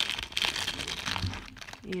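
Thin clear plastic bag crinkling and crackling in the hands as a bar of soap is slid out of it, for about a second and a half.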